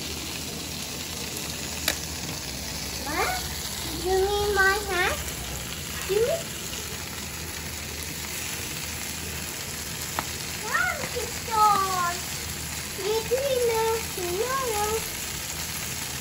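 Chicken drumsticks sizzling steadily on a wire grill over a charcoal barbecue. A high-pitched voice speaks at intervals over the sizzle.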